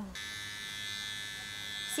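Panasonic electric body trimmer running with a steady high buzz as it is slid over the skin of a man's back, shaving hair.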